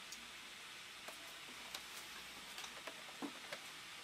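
Quiet room hiss with a few faint, scattered clicks and taps from a carded action figure's plastic blister pack being handled.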